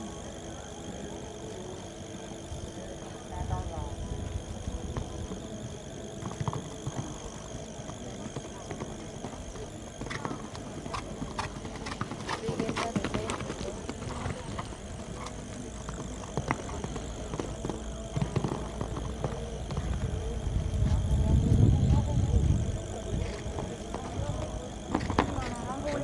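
A pony cantering on a sand arena, its hoofbeats heard over the chatter of spectators, with a faint steady high-pitched tone underneath. A louder low rumble swells about 20 seconds in.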